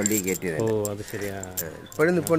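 A man talking, with light metallic jingling and clinking in the background.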